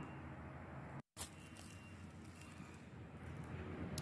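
Faint, steady background noise with no distinct event, broken about a second in by a brief drop to complete silence where two clips are joined.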